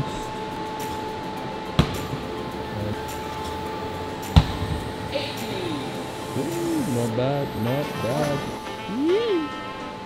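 A steady background drone, likely music, broken by two sharp knocks about two and a half seconds apart, the second louder. Near the end a voice makes sliding, sing-song sounds without words.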